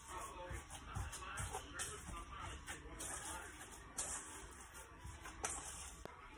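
Hands kneading and squeezing seasoned ground meat for longganisa sausage in a stainless steel bowl: faint, irregular squishing with small clicks.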